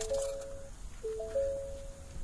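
Ford F-150 dashboard warning chime with the ignition just switched to run: a short three-note electronic chime, heard twice, the second about a second in.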